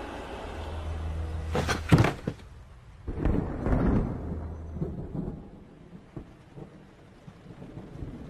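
A sharp crack about two seconds in, followed by a low rumble that dies away over the next few seconds: a dramatic film sound effect.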